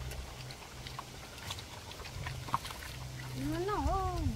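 Piglets in a straw pen making soft low grunts and small rustling clicks. Near the end a voice with a rising and falling pitch comes in.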